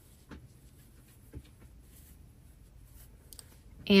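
Faint rustling of a crochet hook drawing chunky yarn through stitches, with a couple of soft ticks.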